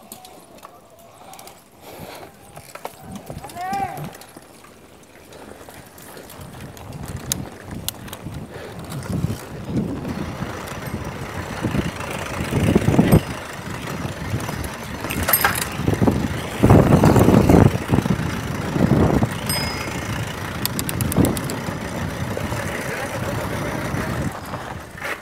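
Mountain bike riding down a dirt forest trail, heard from the rider's camera: tyre noise and the bike rattling and knocking over bumps. It starts fairly quiet and grows louder and rougher after about six seconds, loudest around two-thirds of the way through.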